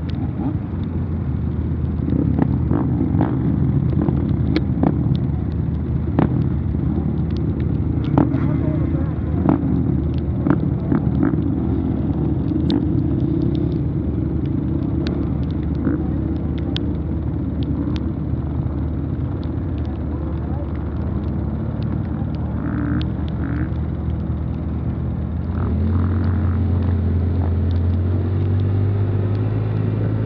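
ATV engine running steadily under way on a rough dirt track, with scattered clicks and knocks from the ride. The engine note steps up about 26 seconds in as it speeds up.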